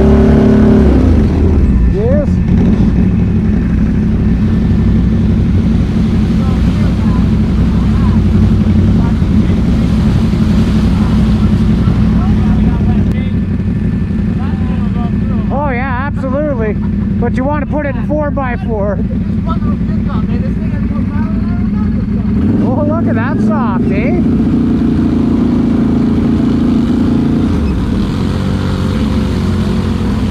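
ATV engines, the Can-Am Renegade XMR 1000R's V-twin among them, running steadily at low speed on a muddy trail, a little quieter after about halfway, when the machines sit running together.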